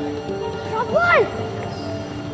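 Background film score with sustained notes. About a second in, a brief high-pitched call that rises and falls in pitch cuts across the music.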